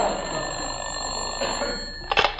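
Telephone bell sound effect giving one long ring of about two seconds, as the studio audience's laughter dies away under it.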